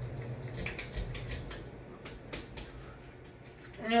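44-inch Hunter ceiling fan running at speed, its motor giving a low steady hum that fades away about a second and a half in, with a scatter of light clicks and ticks.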